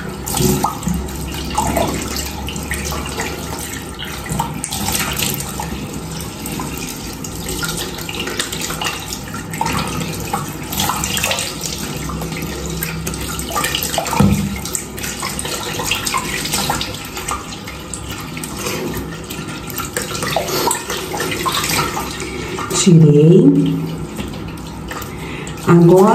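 Tap water running into a bathroom sink, splashing irregularly as water is scooped onto the face by hand to rinse off a facial exfoliant. A brief vocal sound comes near the end.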